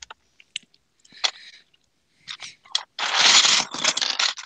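Loose plastic LEGO pieces clicking and rattling as a hand digs through a tub of bricks: a few scattered clicks at first, then a loud burst of clattering in the last second.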